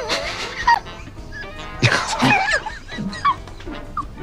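A man laughing in several bursts over background music.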